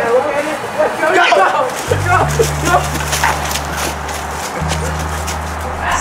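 Several excited voices yelping and shouting in a scramble, with music and a low, steady bass line coming in about two seconds in.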